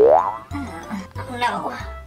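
A cartoon-style rising 'boing' sound effect at the very start, over background music with a stepping bass line.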